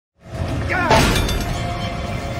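A loud crash about a second in, over film score music.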